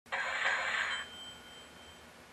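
Logo-intro sound effect: a bright burst of noise lasting about a second, then a few thin, high ringing tones that fade out.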